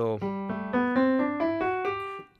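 A piano sound from a digital keyboard playing the G major scale ascending, one note at a time, about four notes a second.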